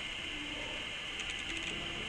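Dry-erase marker writing numbers on a whiteboard: a few faint scratchy strokes a little past midway, over a steady background hiss.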